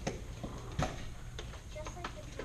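Practice nunchaku being handled, giving a few sharp knocks, the loudest a little under a second in, over a steady low hum.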